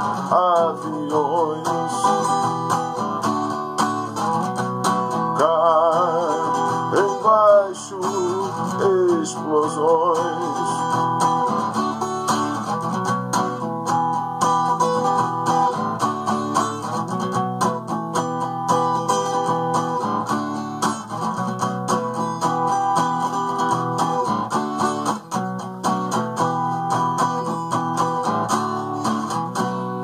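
Acoustic guitar playing a steady chord accompaniment, an instrumental passage between sung verses.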